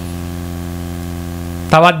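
Steady electrical mains hum in the microphone and sound system, a low buzzing drone that holds level during a pause in the talk. A man's voice resumes near the end.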